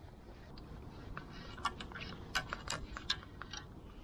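Fly reel's click ratchet ticking faintly and irregularly, a dozen or so clicks, while a hooked trout is played on the line.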